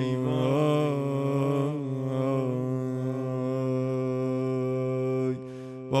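A man's voice chanting a Persian Shia mourning lament, drawing out one long held note that wavers slightly at first, then breaking off about five seconds in.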